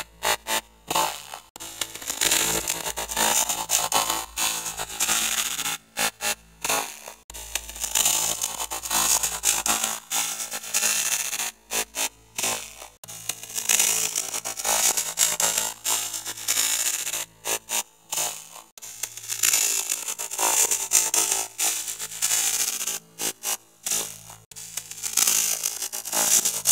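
Heavily effect-processed, distorted cartoon soundtrack: a harsh, noisy wash chopped by frequent brief dropouts, with a low steady hum under it for the first ten seconds or so.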